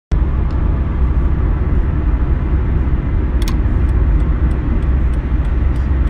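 Steady low road and engine rumble inside a moving car's cabin, with a light click about three and a half seconds in.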